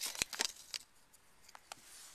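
Handling noise: a quick run of short clicks and paper rustles in the first second, then two more small clicks about a second and a half in, as paper and craft supplies are moved about.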